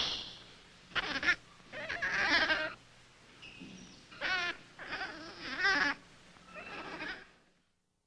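Infant rhesus monkey calling repeatedly: about seven short, high, wavering cries in quick succession that stop shortly before the end.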